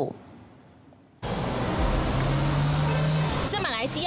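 Street traffic noise starts suddenly about a second in: road noise and a vehicle engine's steady hum. A woman starts speaking near the end.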